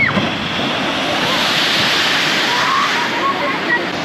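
Rushing, splashing water from a shoot-the-chutes ride boat coming down its drop into the splash pool; the spray noise swells in the middle.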